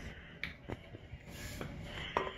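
Three short clicks over light rustling as a plastic Elmer's glitter glue bottle is squeezed and shaken upside down.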